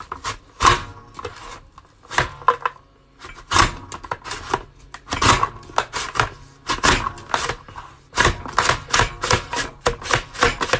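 Potato being cut into French fries on a plastic lever-action mandoline chopper: the handle is pumped down again and again, each stroke a sharp cut and clack. The strokes come irregularly at first and quicken to about three a second near the end.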